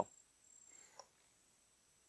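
Faint, steady, high-pitched insect trilling from the forest. The end of a spoken word sits at the very start and a faint tick about a second in, and the second half is almost silent.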